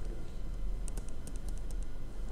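Stylus tapping and clicking lightly on a tablet screen during handwriting: a quick run of small clicks lasting about a second in the middle, over a steady low hum.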